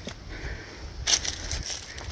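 Footsteps through dry leaf litter and undergrowth, the foliage rustling against the legs, with one louder rustle about halfway through.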